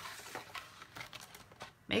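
Stampin' Up! Big Shot hand-cranked die-cutting and embossing machine being cranked, its plates and embossing folder rolling through, with a faint rolling sound and a few small clicks.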